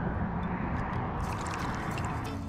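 Shallow seawater sloshing close to the microphone, a steady rush with no distinct splashes.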